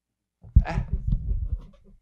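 A man's voice close to a podcast microphone: a short "eh?" drawn out into a rough, pulsing, breathy vocal sound lasting about a second.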